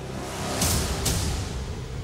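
Background music with a low sustained bass, and a swelling whoosh of noise that builds about half a second in and cuts off suddenly just after the one-second mark.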